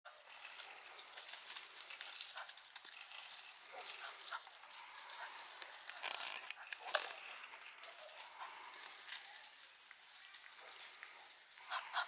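Crinkling of a plastic bag of feed, handled in short crackling bursts over a steady outdoor hiss, loudest about six to seven seconds in. A man laughs right at the end.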